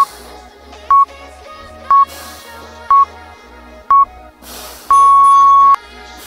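Interval timer counting down the end of a work interval: five short, steady beeps a second apart, then one long beep about five seconds in that marks the switch to rest. Background music plays underneath.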